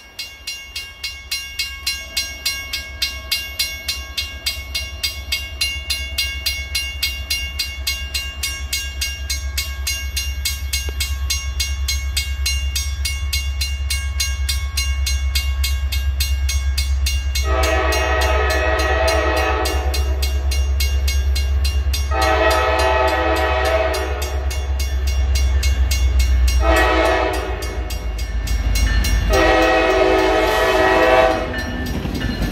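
Mechanical railroad crossing bell ringing at about two or three strokes a second while the low rumble of approaching diesel locomotives grows. From about halfway in, the lead Norfolk Southern EMD SD70M sounds its Nathan K5LA horn in the grade-crossing pattern: long, long, short, long, the last blast still sounding at the end.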